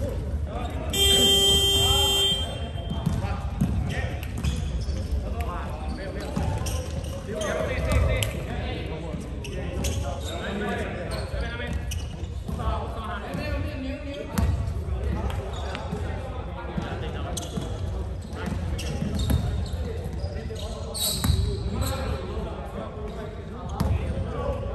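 A gym scoreboard buzzer sounds once, one steady electronic tone lasting about a second and a half, starting about a second in. Around it, voices and bouncing basketballs echo through a large sports hall.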